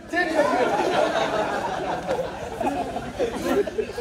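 Only speech: several voices talking over one another, with no clear gap.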